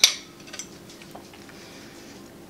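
A metal fork clinks once against a plate, sharp and quickly fading, followed by a couple of faint ticks.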